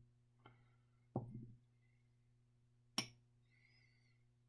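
Small lab beakers handled on a tabletop: a faint tap, then a dull knock about a second in, and a sharp clink about three seconds in.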